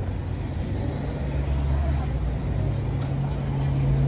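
A motor vehicle's engine running steadily with a low hum; a deeper rumble swells for a second or two in the middle.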